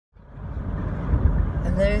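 Steady low road-and-engine rumble heard inside a moving car's cabin, rising out of silence within the first half second.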